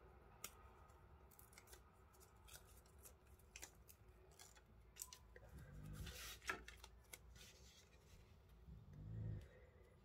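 Faint crinkling and ticking of a thin plastic stamp mask being handled and pressed down onto card by hand, with a short rustle about six seconds in.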